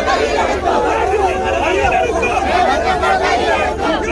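A crowd of protesters shouting and talking over one another in a dense, unbroken babble of many male voices.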